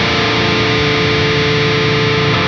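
Heavily distorted electric guitar from a Gibson Les Paul Custom played through a Wizard MTL tube amp head and a Marshall 4x12 cabinet, on the amp's lead channel with the boost on. It holds one long sustained lead note.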